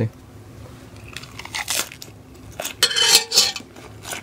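Metal fork clinking and scraping against an enamelware pot while tossing a leafy salad, with crisp crunching of lettuce and cucumber, in two short clusters: one about a second and a half in and a louder one around three seconds in.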